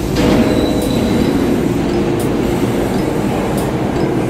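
Loud, steady rumble and rush of city vehicle noise, with a faint high squeal about half a second in.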